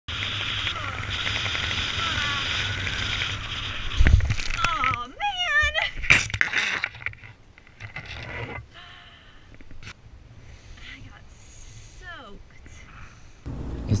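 Wind rushing over a helmet camera's microphone as a skydiver swoops his parachute canopy low over a flooded landing field, then about four seconds in a sudden splash as a wave of standing floodwater sprays over him, followed by his shouting.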